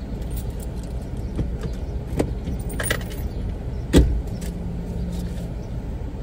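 Car engine idling, heard from inside the cabin, with a few light clicks and clinks and one louder knock about four seconds in.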